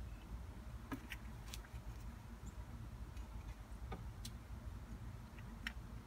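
Faint handling noise: a few scattered light clicks and taps as a clear plastic hose is fed into a plastic jug of RV antifreeze, over a low steady rumble.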